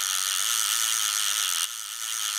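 Fishing reel sound effect: the line paying out from the reel as a steady mechanical whirring buzz that falls quieter near the end.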